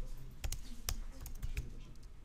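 Typing on a computer keyboard: a run of about seven or eight separate key clicks, irregularly spaced.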